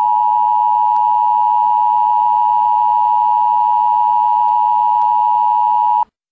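Emergency broadcast attention tone: a loud, steady electronic tone held at one pitch without a break, which then cuts off suddenly.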